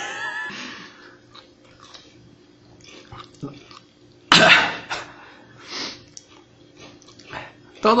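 Short wordless vocal reactions to eating hot chile: a fading exclamation at the start, then mostly quiet, with one loud outburst about four seconds in and a few smaller ones after it.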